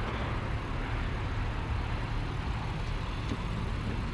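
Steady outdoor road traffic noise, an even hiss with a low rumble and no distinct events.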